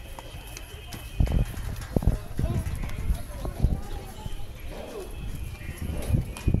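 Footsteps of a person walking on stone paving and steps, heard as irregular low thumps, with a crowd's voices chattering in the background.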